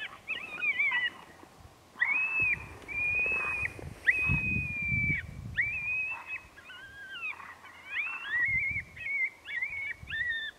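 Coyote howls and yips: a string of high wavering howls, each about a second long, with quick yips breaking in around them. A low rumble comes under the howls about four seconds in.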